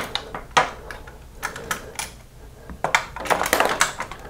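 Light metal clicks and knocks, scattered and irregular, with a quick run of them near the end: a BMW R100RS rear brake master cylinder bracket and foot brake pedal assembly being slid into place against the motorcycle frame by hand.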